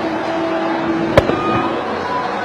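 A single sharp crack of a cricket bat striking the ball a little over a second in, over the steady noise of a stadium crowd with a faint held hum.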